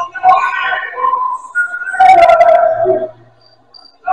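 Basketball sneakers squeaking on a gym floor, in two bursts of short squeals: one at the start and one about two seconds in.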